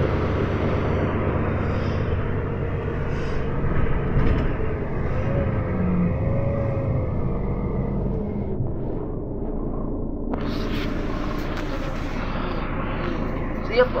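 City bus cabin while riding: steady engine and drivetrain rumble, with a faint whine that rises and falls midway. About ten seconds in, a louder hiss from the wet road joins it.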